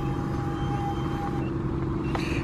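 A vehicle engine running steadily, a low even hum, with a faint thin steady tone over it that stops about one and a half seconds in.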